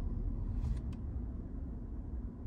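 Low steady rumble inside a stopped car's cabin. A brief faint hiss comes about half a second in, followed by a soft click just before the one-second mark.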